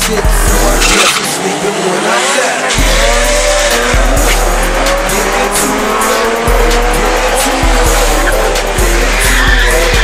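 A drag-racing car launching and accelerating hard down the strip, its engine revving up through the gears, with music with a heavy bass beat playing over it.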